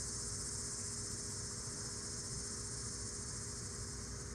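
Steady, high-pitched chorus of insects, crickets or cicadas, droning on without a break.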